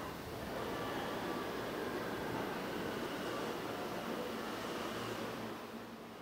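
New York subway train running past a station platform, a steady rumble and hiss that eases slightly near the end, heard from a film played back in a lecture hall.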